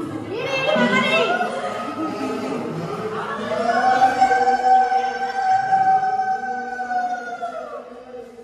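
A conch shell (shankha) blown in one long steady note lasting about four seconds, dropping in pitch as it fades out near the end, as the deity is carried into the house. Voices and chatter in the first few seconds.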